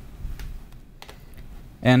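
Faint computer keyboard typing: a few light, scattered key clicks. A man's voice starts again near the end.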